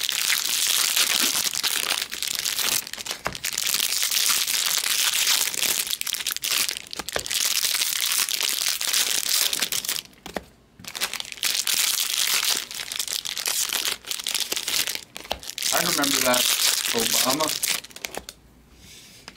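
Foil trading-card pack wrappers crinkling almost without a break as packs are handled and opened, with a short lull about ten seconds in.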